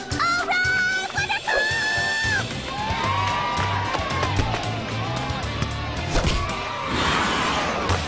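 A cartoon girl's long, high-pitched cheering "woo", held for about two seconds. It gives way to upbeat background music with a steady bass line.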